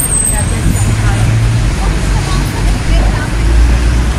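Busy street noise: a low traffic rumble that swells near the end, with scattered talk from people in a crowd.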